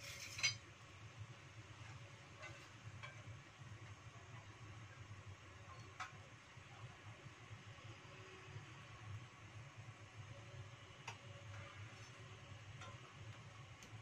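Faint steady low hum of a stove burner heating cooking oil in a nonstick wok, with a few soft scattered clicks.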